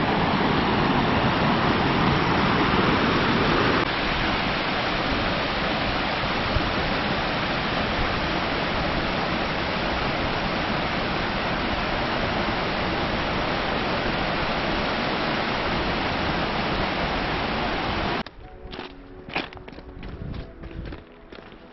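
Steady rush of a mountain stream cascading over rocks close by, a little louder for the first few seconds. About 18 s in the water sound cuts off abruptly and soft music with light plucked notes takes over.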